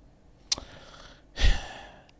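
A person's breath out into a close microphone about one and a half seconds in, short and forceful, with a thump in the bass, then fading away. A short click comes just before it, about half a second in.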